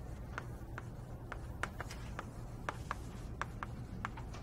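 Writing on a classroom board: a string of short, irregular taps and scratches over a steady low room hum.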